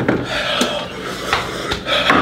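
A man breathing hard and blowing air out through pursed lips in a few sharp, raspy breaths, reacting to the burn of an extremely hot sauce in his mouth and throat.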